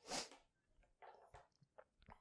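Near silence: room tone, with one short soft noise just after the start and a few faint ticks about halfway through.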